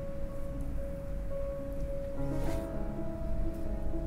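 Background music of held notes that shift pitch every second or so, with a brief soft noise about halfway through.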